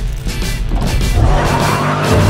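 Upbeat music with a steady beat plays, and about a second in a car's tires squeal as it takes off fast.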